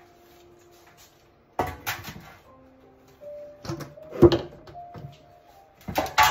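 Background music with household handling noises: a clatter about a second and a half in, then knocks around four seconds in, the loudest a sharp thump, as a metal baking tray is fetched and brought to the counter.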